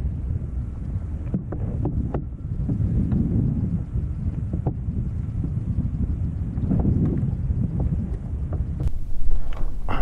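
Wind buffeting the camera microphone, a steady low rumbling noise, with a few light clicks of handling scattered through it.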